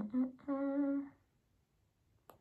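A young man humming with his mouth closed: a few short notes, then one longer held note, stopping a little over a second in.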